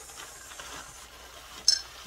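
Faint handling noise, then near the end a single sharp metallic clink with a brief high ring from a heavy bell-shaped wind chime being picked up.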